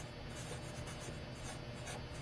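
Black felt-tip marker writing letters on paper: faint scratchy pen strokes.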